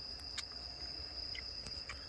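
A steady, high-pitched trill of crickets, with a few faint clicks.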